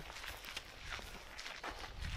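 Footsteps of a few people walking at an easy pace: a string of soft, uneven steps over faint outdoor background noise.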